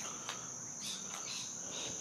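A steady high-pitched whine with faint hiss beneath it, in a short pause with no speech.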